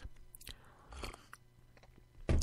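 Faint mouth noises close to a microphone, with soft clicks about half a second and a second in, over a low steady hum.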